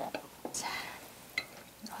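Chopsticks clicking lightly against a plate and tableware, about four short clicks spread over the two seconds, with a short murmured word.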